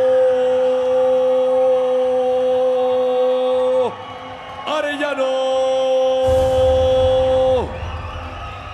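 A ring announcer's drawn-out call of a fighter's name over the arena PA: one long held note that drops in pitch just before four seconds, a short syllable, then a second long held note that falls away near the end. A low rumble comes in after about six seconds.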